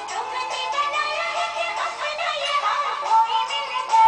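A Hindi film song playing, with a sung melody over the music.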